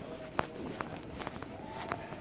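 Footsteps on brick paving, walking at a brisk pace of about two to three steps a second.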